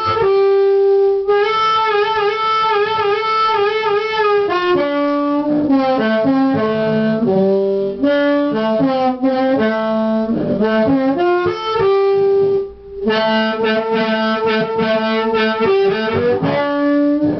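Low G diatonic harmonica, blues harp, played into a cupped handheld mic through a homemade 25-watt LM1875 chip amp with a 'professor tweed' distortion preamp. It plays loud phrases of held and bent notes, with a wavering held note early on and a brief break about thirteen seconds in.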